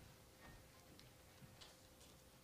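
Near-silent room tone with a few faint, short clicks scattered through it, and a faint steady hum underneath.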